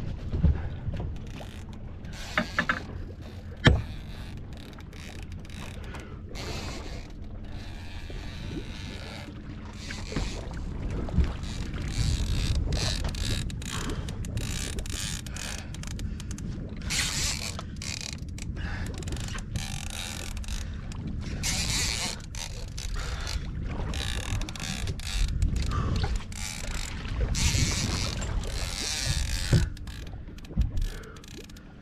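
Big-game fishing reel being worked against a fish, with mechanical ratcheting and gear sounds, over the steady low rumble of the boat's engine. In the second half, bursts of loud hissing a second or two long come and go, with a few sharp clicks early on.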